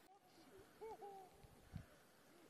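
Faint distant calls over near silence: a few short notes about a second in, each rising and falling in pitch, with a soft low thump shortly after.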